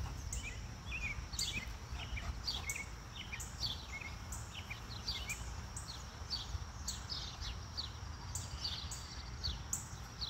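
Small birds chirping in the background, many short falling chirps, over a steady low rumble.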